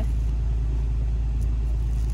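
A steady low rumble with no change in level, with a faint tick about one and a half seconds in.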